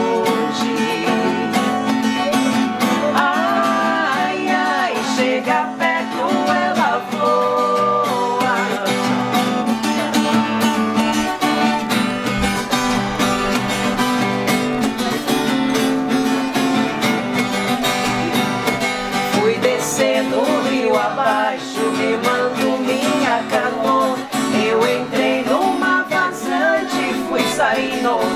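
Two acoustic guitars strumming and picking a música sertaneja song, with a woman's singing voice in parts.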